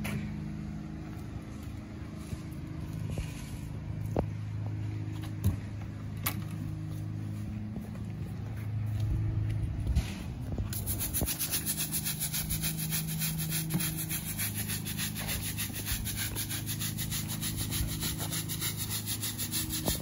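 A low steady hum for about the first ten seconds. Then a stiff-bristled deck brush scrubs back and forth on brick pavers in quick, regular strokes, working degreaser into an oil stain.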